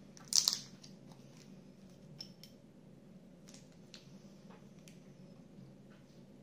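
Small plastic parts bag crinkling as it is handled, loudest in a short burst about half a second in, followed by a few faint rustles and ticks.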